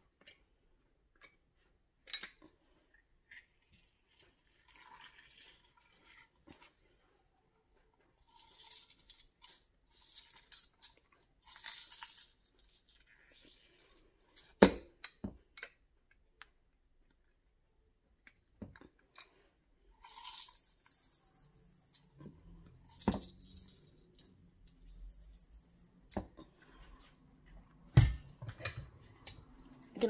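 Half a lemon squeezed in a hand-held citrus press, with short spells of squishing and dripping juice between pauses. Scattered sharp knocks of the press and the fruit against the blender cup and counter, the loudest near the end.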